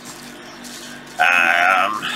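A person's drawn-out, slightly wavering vocal sound, held for under a second and starting a little past the middle, over faint background noise.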